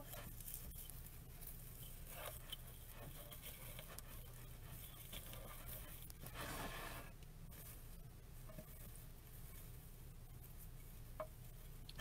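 Faint rustling and crinkling of ribbon as a bow's loops are fluffed out by hand, with a louder rustle about halfway through, over a steady low hum.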